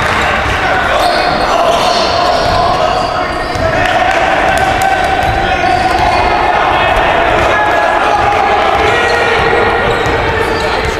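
Game sound in a gym: a basketball bouncing on the hardwood floor among players' and spectators' voices, echoing in the large hall.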